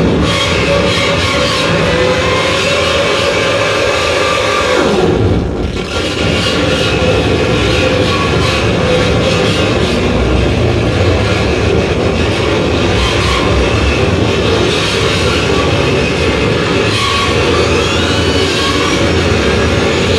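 Live harsh noise: a loud, dense, unbroken wall of distorted electronic noise played on tabletop electronics, including a Roland SP-404 sampler. It dips briefly about five seconds in, and rising gliding tones run through it near the end.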